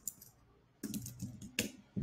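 Typing on a computer keyboard: a few keystrokes, a short pause, then a quick run of keystrokes ending in one sharper key click as the chat message is sent.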